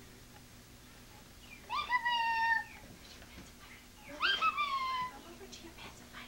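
A six-month-old baby's two high-pitched squeals. Each lasts under a second, swooping up sharply and then held with a slight fall; the first comes about two seconds in and the second about four seconds in.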